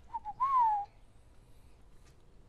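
A short whistle: two quick chirps, then a longer note of about half a second that rises and then falls.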